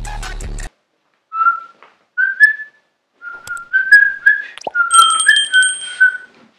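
A person whistling a short tune: a string of brief notes stepping up and down in pitch, starting about a second and a half in. Before that, a burst of music cuts off suddenly, and a few light clicks and a knock sound alongside the whistling.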